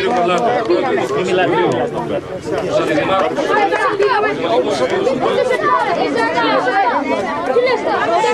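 A man giving a speech in Greek through a public-address microphone.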